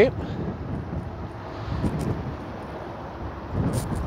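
Steady outdoor background noise, a low rumble with a soft hiss, with a couple of faint clicks.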